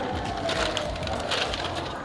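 Steady background noise of an open-air seating area, with a distant siren slowly falling in pitch and fading out near the end.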